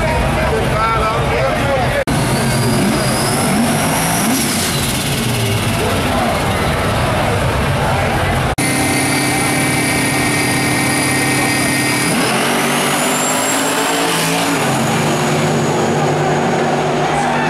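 Turbocharged Ford Mustang drag car running hard at the start line through a smoky burnout, with a high turbo whine that rises in pitch about three-quarters of the way through. Crowd voices run underneath, and the sound breaks off abruptly twice for a split second.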